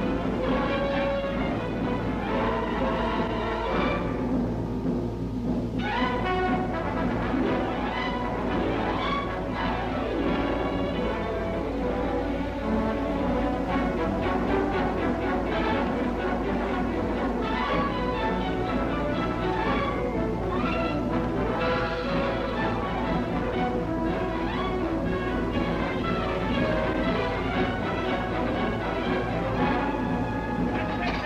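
Orchestral film score with timpani, over a steady low hum.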